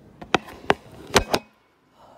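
A quick series of five sharp taps or knocks in about a second, then a brief drop to near silence.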